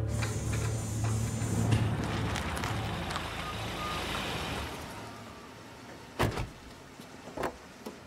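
A car pulling in, its engine and tyres fading away over the first five seconds, then car doors shutting twice with sharp thuds near the end.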